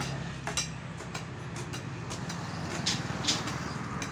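A small engine running steadily at idle, with a few sharp chops of steel hoe blades striking the soil, the loudest a little before three and a half seconds in.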